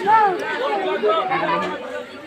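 Several people's voices talking over one another, a crowd's chatter.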